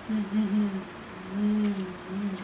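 A person humming a tune with the mouth closed: a few short held notes, then a longer note about midway.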